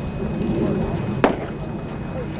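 A pitched baseball smacking into the catcher's leather mitt: one sharp pop about a second in, over steady low ballpark background noise.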